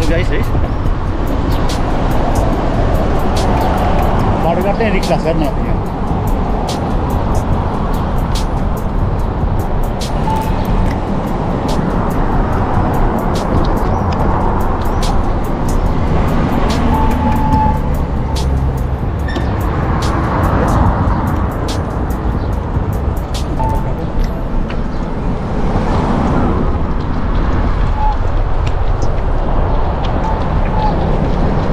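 Wind buffeting the microphone of a handlebar-mounted camera on a moving bicycle: a loud, steady rumble that swells and fades, with frequent sharp clicks and rattles from the bike running over paving.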